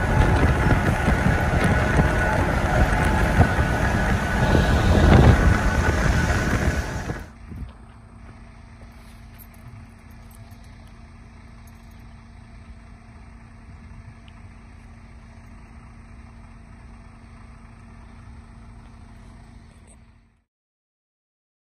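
Loud, steady road and wind noise of a moving truck. About seven seconds in it cuts off suddenly to a much quieter, steady low hum.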